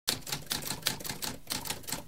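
Typewriter keys striking in a quick, steady run of clicks, about five or six a second.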